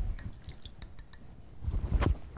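Light clinks and taps of kitchen utensils and dishes being handled on a countertop, with a duller knock of handling near the end.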